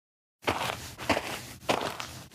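Footsteps walking at about two steps a second, starting about half a second in after a short silence.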